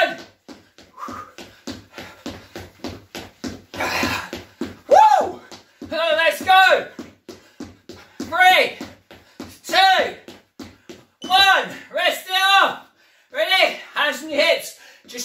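Rapid footfalls on a wooden floor from running on the spot with high knees, several landings a second, with short voiced shouts every second or two.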